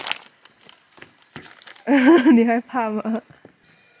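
A woman's voice makes two short wordless sounds with a wavering pitch about two seconds in, lasting just over a second, after a near-quiet stretch with a few faint clicks.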